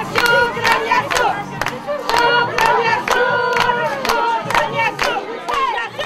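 A group of women singing together with a rhythm of hand claps, about three claps a second.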